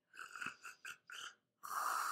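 Snore-like breathing that stands for a sleeping dragon's breath: a string of short rasping breaths in the first second and a half, then one long hissing breath out near the end.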